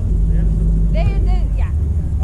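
Brief, unclear voices about a second in, over a steady low rumble.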